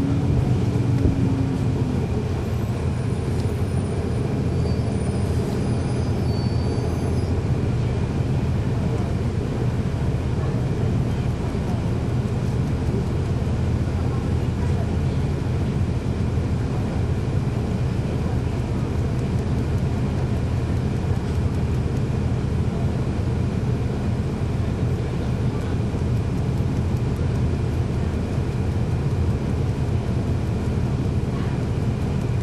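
Cabin sound of a 2011 NABI 416.15 transit bus, its Cummins ISL9 inline-six diesel running steadily with drivetrain and road noise.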